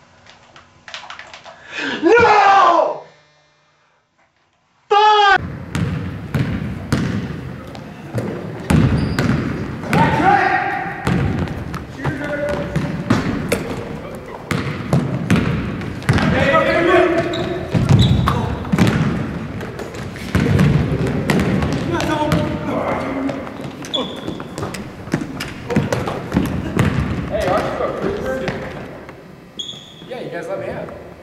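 Basketball bouncing again and again on a hardwood gym floor, with voices calling out during play. Before it, a brief sliding tone and about two seconds of silence.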